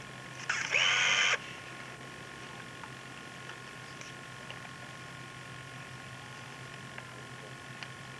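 Old videotape soundtrack with a steady hum and hiss, broken about half a second in by a sudden loud burst of noise that lasts just under a second and cuts off sharply.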